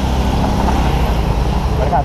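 Idling motorcycle engines and passing street traffic: a steady, even low rumble.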